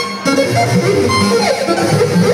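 Live synthesizer notes from the Bebot iPhone app played through a concert PA, the pitches sliding up and down.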